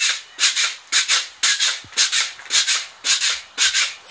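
Pogo stick bouncing on a concrete sidewalk, each landing a short noisy stroke, in a steady rhythm of about two bounces a second.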